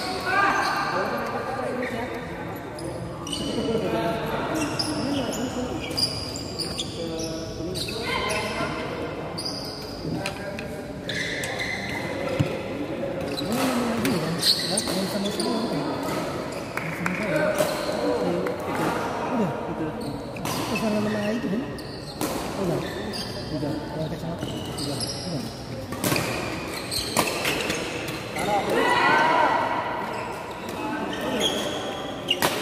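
Badminton rackets striking shuttlecocks in rallies, a sharp hit every second or so at irregular intervals, with players' and onlookers' voices calling throughout in a large hall.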